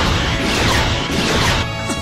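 Loud background music layered with beam-weapon and crash sound effects of a mecha battle, as green beams strike and bend around a shield.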